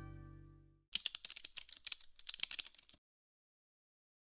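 A plucked guitar chord rings out and fades. About a second in, a quick, irregular run of clicks like keyboard typing lasts about two seconds and stops abruptly, followed by dead silence.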